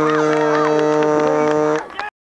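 A horn sounds one long, steady, low tone and cuts off suddenly near the end, over crowd voices.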